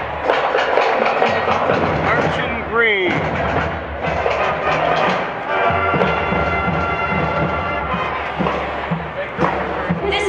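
High school marching band playing as it passes: brass horns and drums, with a sustained brass chord in the second half. A short sliding pitch glide rises and falls about three seconds in.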